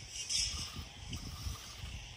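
Wind buffeting the microphone in irregular low gusts, with a short scratchy hiss about half a second in as a sand rake is dragged through bunker sand.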